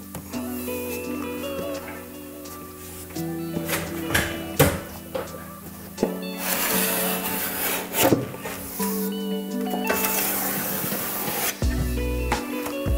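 Background music with held chords and a light beat. Over it comes the scraping of a filling knife smoothing coving adhesive along a joint, loudest about six to eight seconds in and again near the end.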